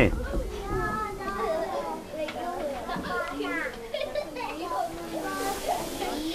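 Background voices chattering, several of them children's, quieter than a close speaker, with no single voice standing out.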